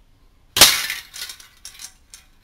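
A single shot from an Aimtop SVD gas-powered airsoft rifle, its BB striking a hanging aluminium drink can: one sharp, loud metallic hit about half a second in, then a few fainter rattles as the can swings.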